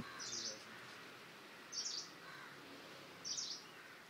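A bird chirping three times, short high calls about a second and a half apart, over faint outdoor background hiss.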